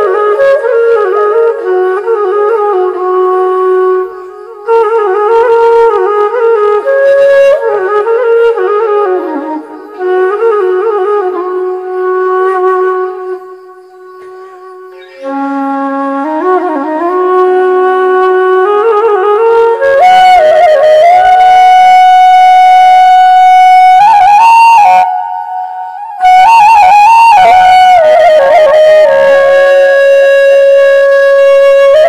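Background music: a flute playing a melody in phrases with short pauses between them, fuller and louder in the last third.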